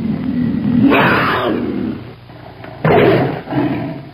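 Recorded big cat roar sound effect: continuous low growling with a loud roar about a second in and two more near the end, then it cuts off.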